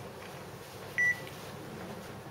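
A single short, high electronic beep about a second in, over quiet room tone.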